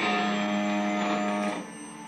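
Buzzy electronic synthesizer tone played through an amplifier: one low, steady note rich in overtones that starts abruptly, holds for about a second and a half, then cuts off.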